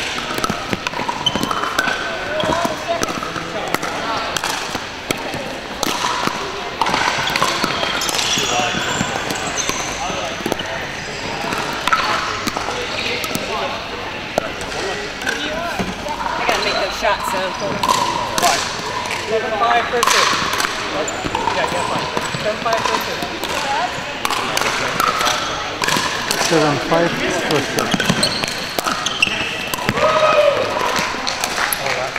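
Pickleball play: solid paddles striking a hard plastic pickleball and the ball bouncing on a wooden gym floor, a scatter of sharp knocks coming at irregular intervals from several courts at once, over steady background chatter of many voices.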